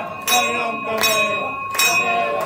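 Temple bell struck by hand again and again, about three strokes, each ringing on into the next, with people's voices beneath.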